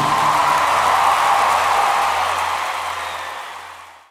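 The end of a swing band number: the last notes stop at the outset and a noisy wash of sound rings on, fading steadily away to silence by the end.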